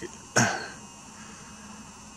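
One short cough about a third of a second in, then faint steady background noise.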